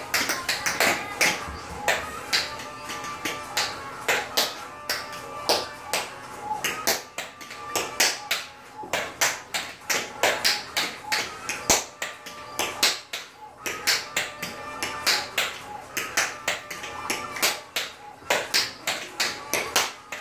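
Tap shoes striking a tile floor in fast, uneven rhythms of sharp clicks, the loudest sound, over recorded music. The taps stop near the end.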